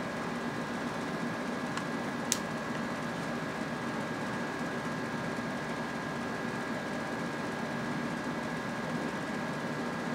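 Steady background hum of room noise with a faint, constant high-pitched whine. There is a single short click a little over two seconds in.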